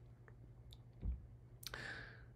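A quiet pause between a man's sentences: a few faint mouth clicks, a soft low thump about a second in, and a short intake of breath near the end, over a low steady hum.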